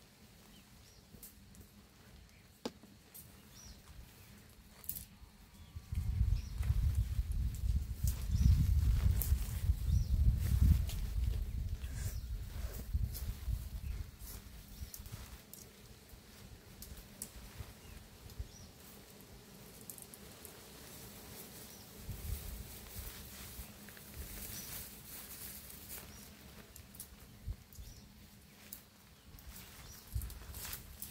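A tent being taken down a short way off, its fabric rustling and shifting as it is collapsed. A loud low rumble runs for several seconds in the middle, with a weaker one later.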